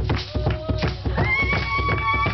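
Single drum beaten in a steady rhythm together with the stamping of dancers' ankle rattles, under singing voices; a little over a second in, a high voice takes up a long held note.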